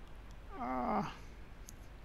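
A single short hummed voice sound, about half a second long, holding one pitch and then dropping as it ends, over faint steady room hiss.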